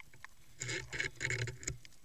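Underwater on a reef: a quick run of four or five rough bursts lasting about a second, over scattered sharp clicks.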